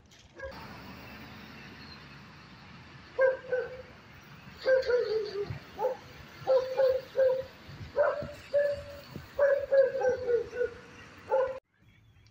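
An animal calling: about ten short pitched calls in quick groups, starting about three seconds in, over a steady background hiss that cuts off near the end.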